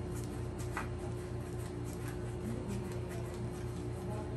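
Quiet background music holding one steady note, with a few faint clicks of playing cards being handled.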